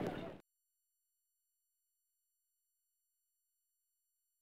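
Near silence: a brief moment of background noise cuts off abruptly less than half a second in, and the audio then goes dead.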